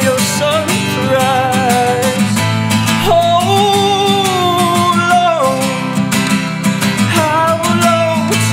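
Male voice singing over a strummed acoustic guitar, with one long held note from about three seconds in until about five and a half seconds.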